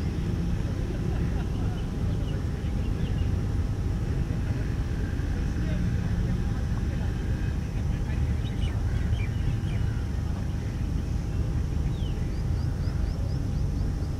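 Indistinct murmured talk of a group of players over a steady low outdoor rumble, with a few short high chirps near the start and again near the end.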